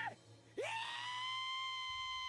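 An anime character's high-pitched scream of terror: it starts about half a second in with a quick upward swoop, then holds one steady pitch.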